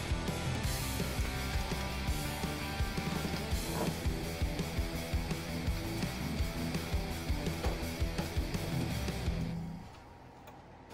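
Background music: a guitar-led track with a steady beat, fading out near the end.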